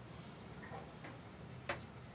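Quiet lull with a steady low hum and one sharp click near the end.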